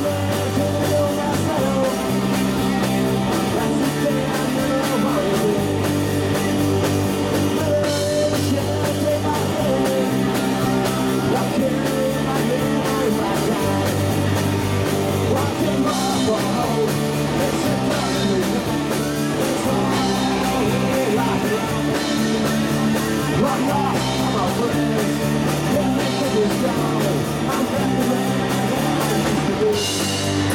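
Live garage rock band playing a song: electric guitars, bass and drum kit, with a man singing lead vocals. The bass moves between notes every couple of seconds under a steady, loud full-band sound.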